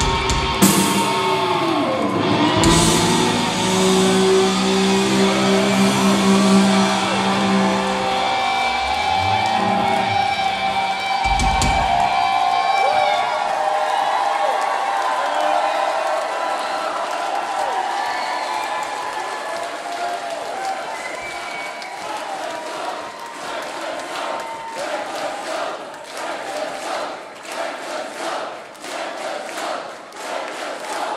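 Glam metal band ending a song live: a held final chord rings out over bass and drums with big closing drum hits, stopping about twelve seconds in. The crowd then cheers, turning to rhythmic clapping near the end.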